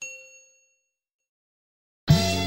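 Notification-bell "ding" sound effect from a subscribe-button animation: a single chime struck once, ringing out and dying away within about half a second.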